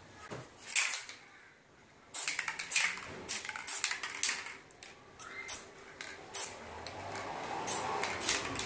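Aerosol spray-paint can sprayed in a series of short hissing bursts, the first about a second in and a quick cluster a second later.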